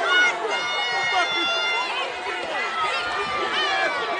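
A large crowd of people shouting and yelling over one another, many voices at once, with long high-pitched yells about half a second to two seconds in.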